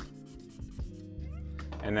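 Wide paper blending stump rubbing across graphite shading on drawing paper, a faint scratching, under steady background music.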